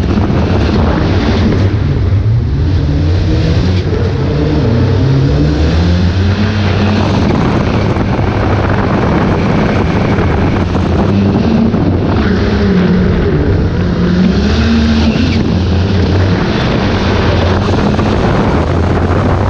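Citroën DS3 WRX rallycross Supercar's turbocharged four-cylinder engine under hard acceleration, its pitch climbing and then dropping back several times as it revs up and shifts through the gears.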